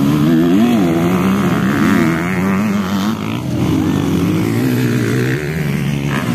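Motocross dirt bike engines running on the track, their pitch rising and falling as the riders work the throttle.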